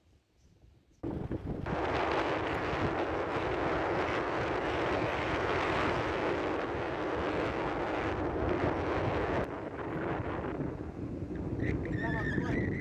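Strong wind blowing on the microphone, mixed with the wash of breaking surf. It starts abruptly about a second in and eases slightly near the end.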